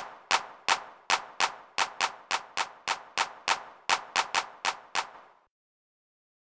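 A drum-machine hand-clap sample in FL Studio triggered over and over, about three claps a second, stopping about five and a half seconds in. It plays back under the triangular pan law while it is panned, the law that makes a sound seem quieter the further it is panned to the side.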